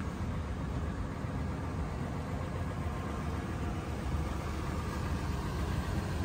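Steady low rumble of a vehicle engine idling.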